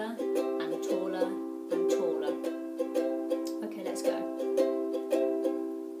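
Ukulele strummed in a steady, even rhythm, the same chords ringing on and on.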